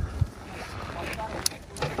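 Low, uneven rumble of wind buffeting the microphone, with a soft thump shortly after the start and a short click about halfway through.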